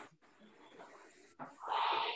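Concept2 indoor rower being rowed at a low stroke rate of about 13 strokes a minute: the air flywheel's whoosh surges loudly at the start and again in the second half, with a quieter steady whir between.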